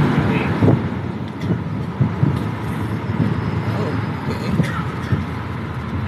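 Tour vehicle in motion: a steady low engine and road rumble with scattered small knocks and rattles.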